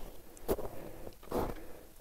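Two footsteps crunching in packed snow, about a second apart.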